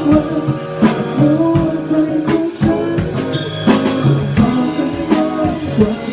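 Live band music: a drum kit beating steadily about twice a second under guitar, with a man singing into a microphone.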